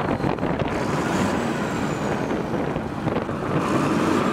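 Tractor diesel engine idling steadily, with its exhaust being sampled by a gas-analyser probe for an emissions check.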